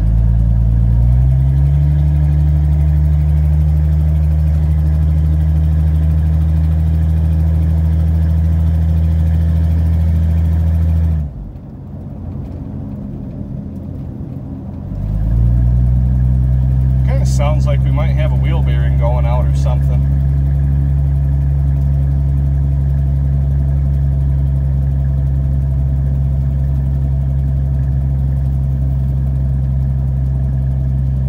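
1982 Ford F150 pickup's engine heard from inside the cab while driving: a steady low drone that climbs in pitch at the start and then holds. About eleven seconds in it drops away for a few seconds, then climbs back up and runs steady again.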